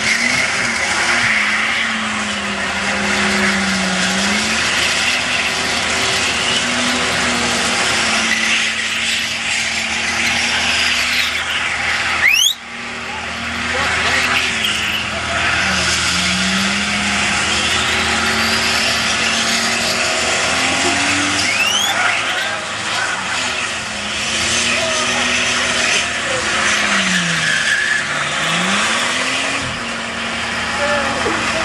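Nissan Skyline R31 doing a burnout: the engine is held high, its note rising and dipping repeatedly, over the continuous screech of spinning rear tyres. A sudden sharp, loud crack comes about twelve seconds in.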